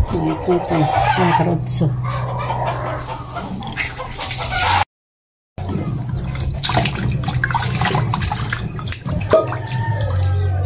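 Fish steaks being rinsed by hand in a pot of water in a stainless steel sink: irregular sloshing and splashing in the second half, after a brief cut to silence. Before the cut, short pitched calls sound over a steady low hum.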